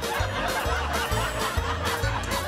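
Upbeat background music with a steady bass beat, overlaid by a laugh track of chuckles and snickers.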